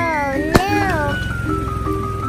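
Background music under a high, childlike cartoon voice that slides up and down in pitch, with one sharp snap about half a second in.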